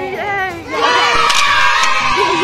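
A group of teenage girls shouting and cheering together. A loud, sustained group yell breaks out a little under a second in.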